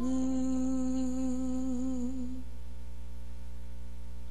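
A female singer holds one long note with a slight waver at the end of a line, fading out about two and a half seconds in, over a soft sustained backing that carries on alone.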